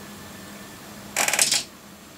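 A brief rattling clatter of small hard objects being handled, lasting about half a second a little past the middle; otherwise quiet room tone.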